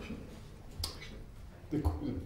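A single sharp click about a second in, against quiet room tone, followed by a short spoken word near the end.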